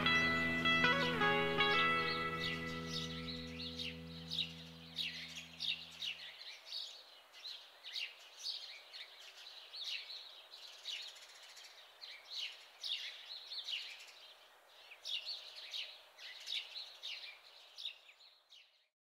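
A held guitar chord from the soundtrack music rings and fades away over the first six seconds. Small birds chirp in short, high calls every second or so, over a faint outdoor hiss, until they stop near the end.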